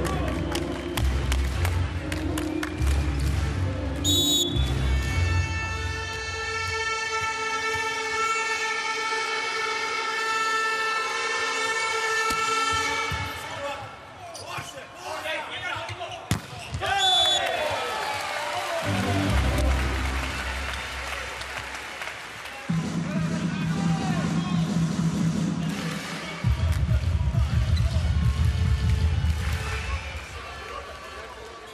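Volleyball arena sound: music playing over the PA, with a thumping beat at the start and again near the end and a long held chord in between. A referee's whistle is blown briefly twice, about four seconds in and again about seventeen seconds in.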